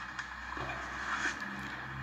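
Faint film soundtrack heard through a laptop's speakers: a low, steady boat-engine drone with a light hiss of sea, which grows a little stronger about half a second in.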